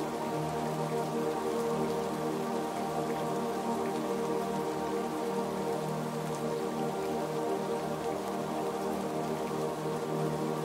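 Soft ambient music of long held chords, layered over the steady sound of falling rain.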